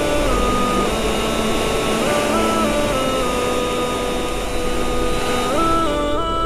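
Background music of sustained chords that change every second or two, with a steady rushing hiss laid over it.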